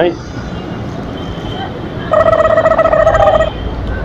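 Roadside traffic noise, with a vehicle horn sounding once in the middle for about a second and a half as one steady, loud blast.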